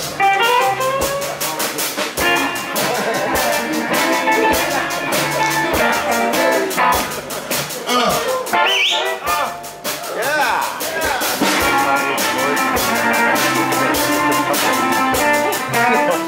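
Live electric blues band playing: electric guitar over a steady drum-kit beat.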